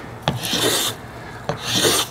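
Steel block plane taking two strokes along a wooden paddle blade, cutting thin shavings. Each stroke is a short hiss of about half a second that starts with a sharp click.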